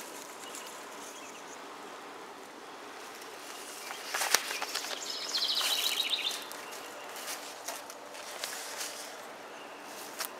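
Steady outdoor garden ambience with insects. A brief burst of rustling and clicks comes about four seconds in, and a short, rapid trilled bird call follows about a second later.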